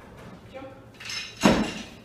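A sudden thud with a metallic clank and ringing about one and a half seconds in: a barbell rattling in the lifter's hands as he lands a jump in a 'jump and drop' drill.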